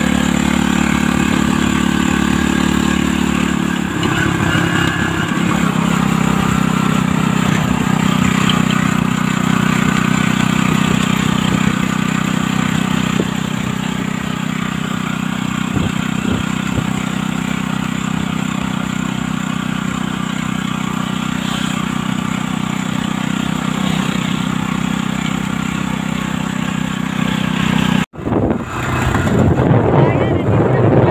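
Engine of the roofed motor vehicle being ridden, running steadily while it drives along, heard from on board with road and wind noise. Its note shifts about four seconds in, and the sound cuts out briefly near the end.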